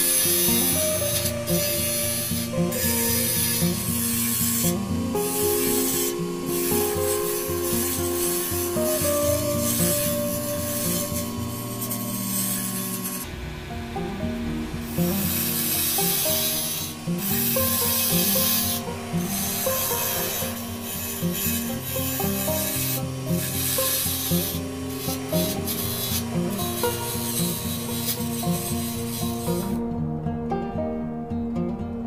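Wood lathe spinning a wooden pen blank on a mandrel while a hand-held turning tool cuts and scrapes it, a hissing cut that comes and goes in bursts; background music plays beneath.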